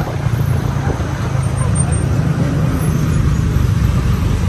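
Busy city road traffic heard from a moving motor scooter: a steady, loud low rumble of engines and road noise.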